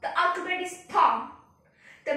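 Only speech: a girl talking in two short phrases, with a brief pause near the end.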